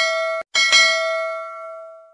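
Notification-bell sound effect: a bright bell ringing in several tones. It cuts off suddenly, rings again about half a second in, then fades toward the end.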